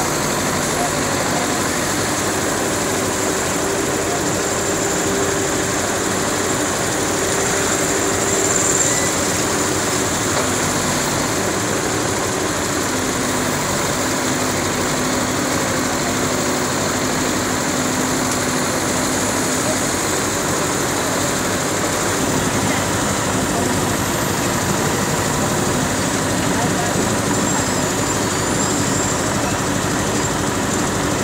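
Terex backhoe loader's diesel engine running steadily as the machine digs a trench, its level even throughout.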